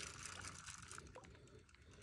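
Near silence: faint outdoor background with a few faint light ticks in the first second that die away.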